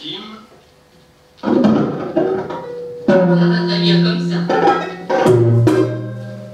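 Live electronic noise music from laptops and tabletop electronics: after a quiet first second and a half, loud dense sound cuts in abruptly, with held low tones and new layers starting suddenly about three and five seconds in.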